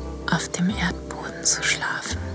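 A woman whispering close to the microphone over soft background music with sustained chords.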